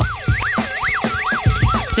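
A cartoonish warbling sound effect, one whistle-like tone swooping up and down about five times, over background music with a thumping beat.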